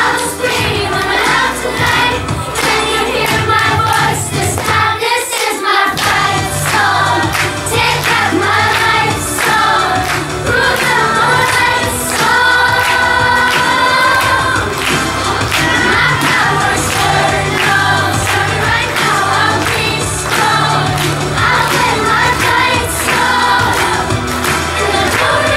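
A group of children singing a song together over instrumental accompaniment with a steady bass line. The low accompaniment drops out briefly about five seconds in.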